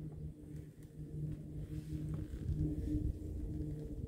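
A low, steady mechanical hum with an uneven rumble beneath it.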